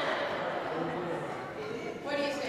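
Indistinct voices talking quietly, too faint for any words to be made out.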